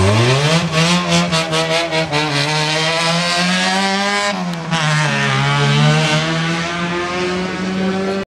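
Rally car's engine revving hard as it accelerates along the road. Its pitch climbs steeply at first, holds high, drops suddenly about four seconds in and then climbs again.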